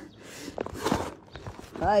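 A few knocks and scuffs of handling noise on a phone's microphone, with a voice starting again near the end.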